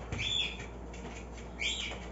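A bird chirping twice, in short high calls about a second apart.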